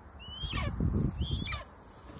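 Golden eagle giving two short, high-pitched calls about a second apart, each sliding up and then down in pitch, over low rustling.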